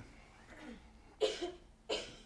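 A man coughing twice, short and throaty, about a second in and again near the end.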